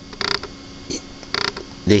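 Cardboard toy packaging creaking in hand, in two short bursts about a second apart with a brief crackle between them.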